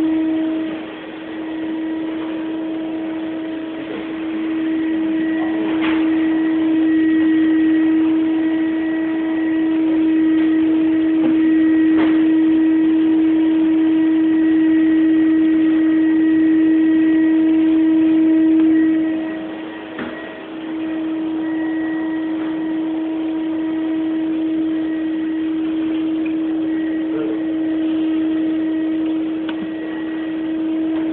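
Motorised pop-up downdraft extractor hood humming steadily as it retracts down into a stone-veneer kitchen island worktop. The hum dips briefly about twenty seconds in, then carries on a little quieter, with a few faint clicks along the way.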